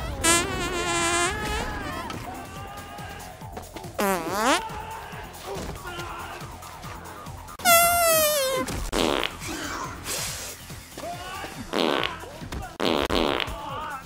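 A series of dubbed-in fart sound effects with wavering pitch. There is a long one near the start, a rising-and-falling one about four seconds in, and the loudest, a falling one, about eight seconds in, then several shorter ones. Film score plays underneath.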